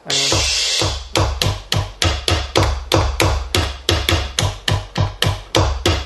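E-mu Drumulator drum machine playing its custom-bank bass drum samples, triggered by hand in a fast, even run of about four electronic kicks a second. The run opens with a longer, noisier hit that lasts about a second.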